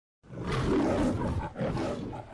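A lion-like roar in two growls: a long one, then after a brief break about one and a half seconds in, a shorter one.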